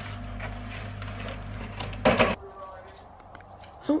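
Kitchen clatter: light knocks and clicks over a steady low hum, with a louder, short clatter about two seconds in. After it the hum stops and it goes much quieter.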